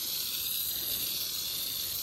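Garden hose spray nozzle hissing steadily as a fine spray of water plays over a horse's coat.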